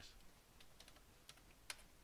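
Faint computer keyboard typing: a handful of soft, separate keystrokes, the sharpest one near the end.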